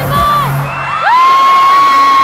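Concert crowd of fans cheering and screaming as the song's music ends in the first half-second. About a second in, one loud, high-pitched scream rises and holds on a single note.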